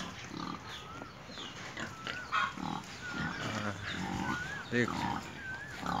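Pigs grunting in a bamboo pen, short grunts scattered irregularly. Over them a short high chirp that rises and falls repeats about once a second.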